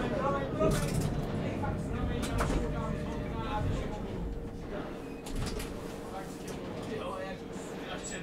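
Inside a tram driver's cab as the tram pulls away from a stop: a low rumble with a steady thin humming tone, and faint voices on and off.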